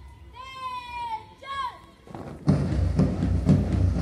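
Two long, drawn-out shouted drill commands, then about two and a half seconds in, loud music starts with a steady heavy beat of about two thumps a second.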